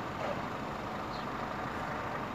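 Steady background hum of road traffic and vehicles, with a faint short high chirp about a second in.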